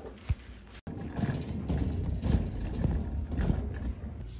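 Shopping cart rolling over a store floor, with a low rumble from the wheels and irregular knocks and rattles from the wire basket. The sound drops out for an instant about a second in, then carries on.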